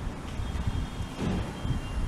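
Low, fluctuating rumble of air from a pedestal fan buffeting the microphone, with a faint steady high-pitched tone.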